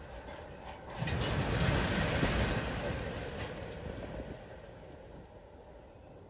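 Freight train rolling past at low speed, covered hopper cars rumbling along the rails. The sound swells about a second in, then fades steadily as the train moves away.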